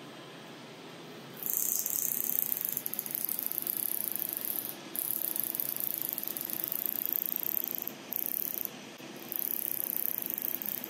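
Halo hybrid fractional laser handpiece firing across the skin: a rapid, high-pitched buzzing hiss. It starts about a second and a half in and runs in passes of a few seconds, with short breaks around the middle and near the end.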